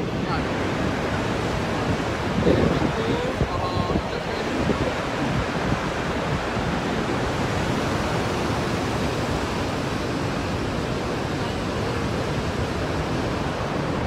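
Steady rushing of the Horseshoe Falls at Niagara, heard close up, with wind buffeting the microphone. Faint voices of people nearby come through about two to four seconds in.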